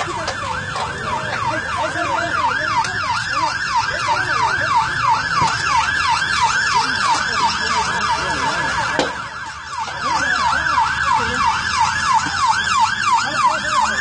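Emergency vehicle siren in a fast yelp, its pitch sweeping up and down about three times a second. It dips briefly past the middle, then comes back.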